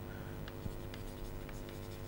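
Chalk writing on a chalkboard: faint short taps and scratches of the chalk as letters are written, over a steady low electrical hum.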